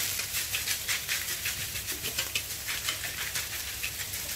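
Rice coated in egg yolk frying in oil in a wok, a light steady sizzle with irregular clicks and scrapes of a metal spatula against the wok as the rice is spread and turned.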